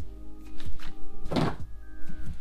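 Background music with sustained tones, and a cardboard box being handled: one loud thunk a little after halfway through.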